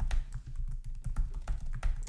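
Rapid keystrokes on a computer keyboard, a quick run of about a dozen clicks: a password being typed at the LUKS disk-encryption prompt during boot.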